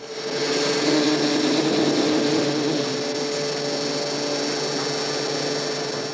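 Automatic glass-cutting machine running: a steady motor whirr with a held mid-pitched hum and a high whine over a hiss, holding level throughout.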